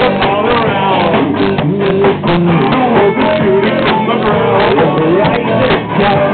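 A band playing a rock song live at full volume: guitar over a steady drumbeat.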